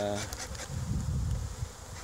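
Honeybees buzzing around an opened stack of hive boxes, a low hum that wavers in loudness as bees fly past.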